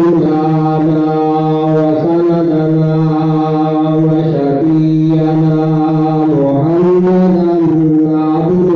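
A man's voice chanting in a slow, melodic Islamic devotional style, holding long notes that bend and change pitch about every two seconds.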